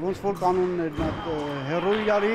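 A man speaking in Armenian, with a dull thump about a second in and a faint steady high tone from then on.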